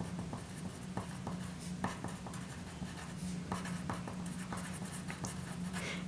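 Pencil writing on paper: a run of short, irregular scratches and taps as a line of words is written by hand.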